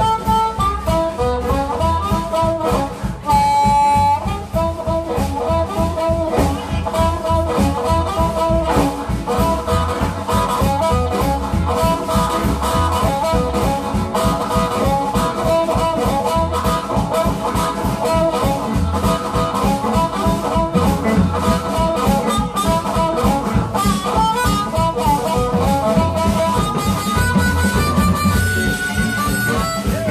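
Live blues band: a harmonica cupped to the microphone plays a solo over electric guitars and a drum kit, with a long held note about three seconds in.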